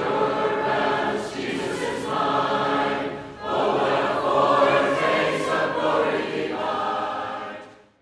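A choir singing in sustained phrases as outro music, fading out near the end.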